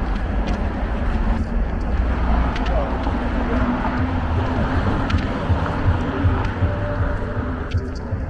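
City street traffic at night: a steady low rumble of passing cars, with indistinct voices mixed in.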